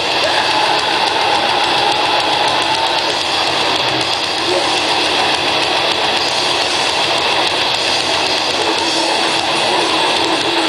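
Grindcore band playing live: distorted guitar, bass and drums in a loud, dense, unbroken wall of sound.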